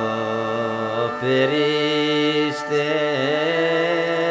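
Thracian folk music: the steady drone of a gaida bagpipe under a slow, ornamented melody, with a singer drawing out a long, wavering note.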